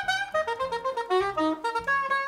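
Saxophone playing a melody of short held notes that step up and down several times a second, over a soft low pulsing accompaniment.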